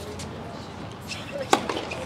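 A single sharp tennis ball impact about three-quarters of the way in, over steady outdoor background.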